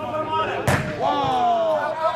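A single sharp thud of a soccer ball being struck, about two-thirds of a second in, amid men's shouting voices.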